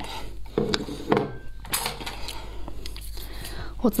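Tableware handled at a table: a few sharp clinks and knocks in the first two seconds as a drinking glass is set aside and chopsticks are picked up against the dish.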